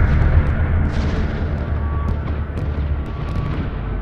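A deep, rumbling explosion sound effect that slowly dies away.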